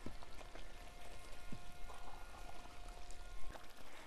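Thick ajvar (roasted-pepper relish) being stirred with a wooden spoon in a large pot over the heat: irregular wet pops and plops from the simmering paste.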